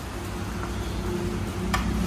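Steady low background hum of a small restaurant dining room, with one sharp clink near the end.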